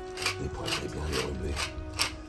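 Hand-turned pepper mill grinding peppercorns in short, rasping strokes, about two a second, over background music.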